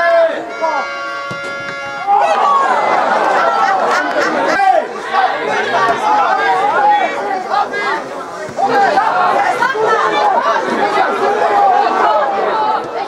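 Onlookers chatting, several voices talking over one another close by. A brief held tone sounds from about half a second in and lasts about a second and a half.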